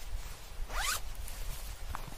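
Backpack zipper pulled open in one quick stroke, rising in pitch, about three-quarters of a second in, with a brief short zip near the end.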